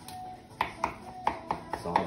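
Thin kitchen knife jabbing into a raw beef eye of round and knocking against the wooden cutting board beneath: a run of about six quick taps in the second half.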